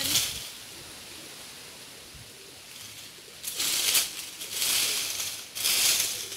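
A leaf rake scraping through dry fallen leaves and mangoes on bare ground: three strokes in the second half, each a brief rustling scrape.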